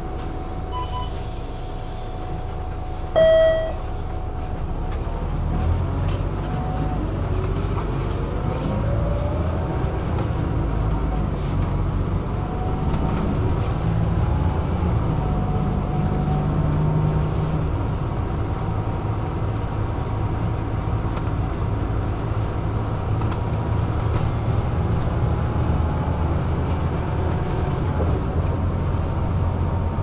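Inside a city bus: a short beep about three seconds in, then the bus pulls away, its drive whine rising in pitch as it speeds up, and runs on with a steady low rumble.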